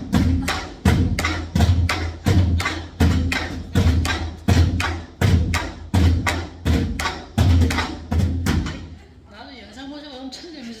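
A group of nanta barrel drums played with sticks in a variation of the Korean train rhythm (gichajangdan): a fast, dense run of stick strokes with a heavier beat about every three-quarters of a second. The playing stops about nine seconds in, leaving quiet talk and chuckling.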